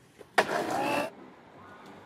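A skateboard hits a metal handrail with a sharp clack about half a second in, then grinds down the rail for under a second: a loud scrape carrying a metallic ring.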